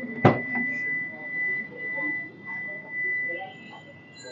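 The driver's door latch of a Toyota Allion clicks once, sharply, about a quarter second in as the door is pulled open. A steady, high-pitched electronic tone sounds under it.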